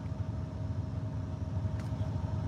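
Steady low engine hum heard inside a semi-truck cab, with a faint steady tone above it and a faint click near the end.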